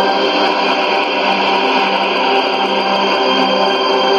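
Music with long held notes, received from a shortwave AM broadcast on 15190 kHz, with a steady haze of static underneath.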